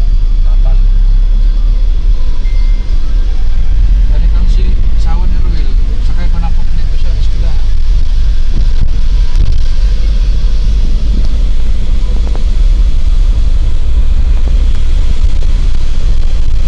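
Loud, steady low rumble of a vehicle's engine and road noise heard from inside the cab while driving.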